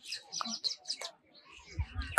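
Small birds chirping in a quick run of short, high notes during the first second, then falling quiet.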